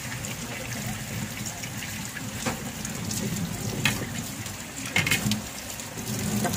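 Pork simmering in its juices in a wok on the stove, a steady hissing and bubbling, with a few short clicks.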